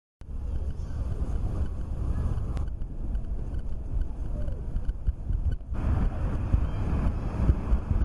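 Wind buffeting the built-in microphone of a Philips ESee CAM 150 pocket camcorder outdoors: a loud, uneven low rumble that starts abruptly just after the start and changes abruptly twice where shots are joined.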